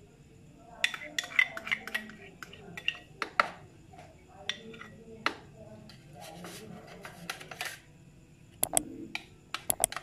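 Measuring spoon scraping yogurt out of a ceramic bowl and knocking against the bowl and small plastic containers: light clicks and scrapes in irregular clusters, the sharpest few near the end.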